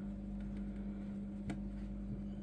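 Steady electrical hum of running aquarium equipment (canister filters and pump), with one faint click about one and a half seconds in.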